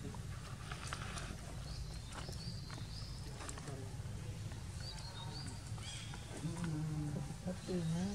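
A low voice sounding during the last second and a half, over a steady low rumble, with a few short high chirps earlier on.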